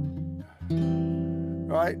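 Archtop guitar playing a lush low chord in F: one chord rings and is cut off about half a second in, then another chord is plucked about half a second later and rings on, a voicing with the seventh and ninth in it and the fifth on top.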